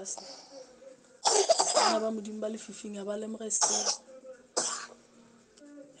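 A person's voice in short pitched stretches, broken by three loud, harsh noisy bursts: about a second in, near four seconds and near five seconds.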